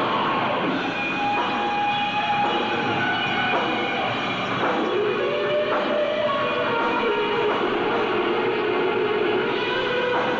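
Live hard-rock band playing loudly, with long held electric guitar notes that bend up and down in pitch over a dense, droning band sound.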